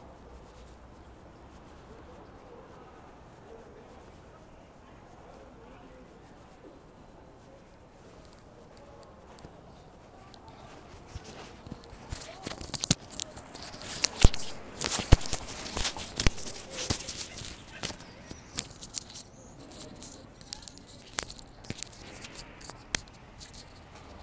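Loud crackling and rustling noise on the microphone, in irregular bursts with sharp clicks, starting about halfway through over a faint street background.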